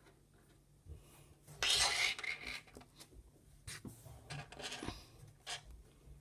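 Handling of a small rock: a rustle about a second and a half in, then a few light clicks as the rock is set down on a tabletop.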